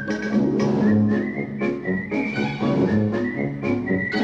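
Closing theme music: a whistled melody over an instrumental backing with a steady beat.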